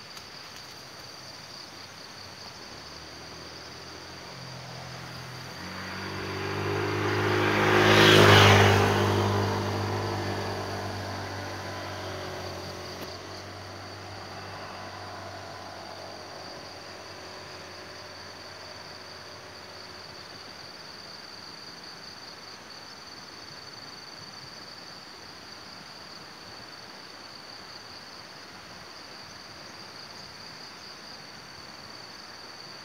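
A motor vehicle passes by: its engine grows louder over a few seconds to a peak about eight seconds in, then fades away. A steady high insect chirring runs underneath throughout.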